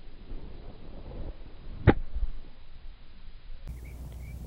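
A golf wedge swung through a flop shot off a tight, closely mown lie, meeting the turf and ball with a single sharp click about two seconds in. The club's bounce strikes the grass just behind the ball.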